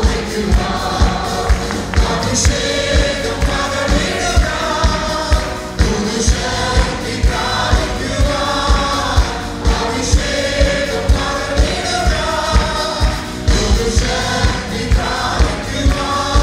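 A mixed group of men and women singing a Malayalam worship song together through microphones, over a band with a steady drum beat of about two beats a second.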